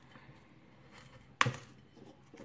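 A knife working a mature coconut, with one sharp crack about one and a half seconds in as the blade prises coconut meat off the hard shell.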